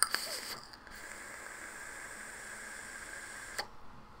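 A drag on a small billet-box-style vape mod, the SXK Bantam Box Revision: a click, then a steady airy hiss of air drawn through the atomizer for about two and a half seconds, cut off by another click.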